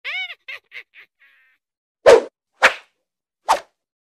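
Sound effects: a short pitched call that echoes and fades away over about a second, then three sharp whooshing swishes, the last near the end.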